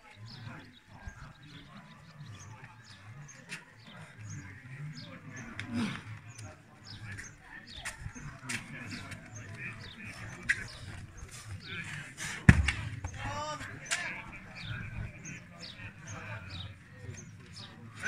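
Steel beer keg dropped onto a rubber mat: one sharp, heavy thud about two-thirds of the way through, the loudest sound here, over low background chatter from spectators.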